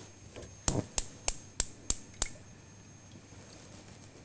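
Gas hob's electric spark igniter clicking six times at an even pace, about three clicks a second, then stopping.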